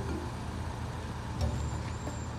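Car engine idling with a steady low rumble, and a single thump about one and a half seconds in.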